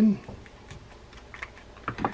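A few light clicks and taps of a screwdriver working the small screws back into a spinning reel's housing, with a slightly sharper pair of taps near the end.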